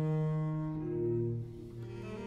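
Three cellos playing a slow baroque trio movement (a Largo): long held bowed notes, with one part moving to a new note partway through and the sound softening toward the end.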